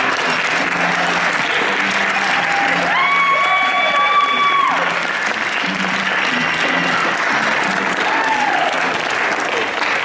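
Theatre audience applauding and cheering, with one long high cheer held for nearly two seconds about three seconds in and shorter calls later.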